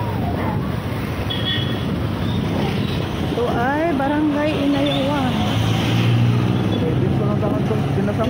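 Wind buffeting the microphone of a moving motorcycle, over the running engine and street traffic. About halfway through a brief indistinct voice rises and falls.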